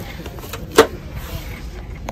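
A plastic blister pack of stone heart ornaments being handled, giving one sharp clack a little under a second in, over a low steady hum of store background.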